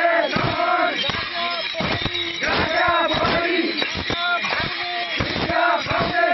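A crowd of worshippers chanting and shouting together, many voices overlapping, with frequent sharp knocks or beats among them.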